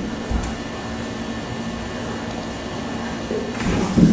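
Steady room hum and hiss, with a low thud right at the start and some shuffling body-movement noise near the end.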